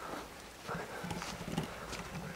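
Footsteps of people walking on a dirt trail, faint and irregular.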